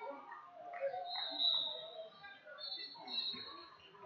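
Voices of spectators and coaches in a gym during a youth wrestling bout, overlapping and indistinct, with short high-pitched squeaks about a second in and again around three seconds in.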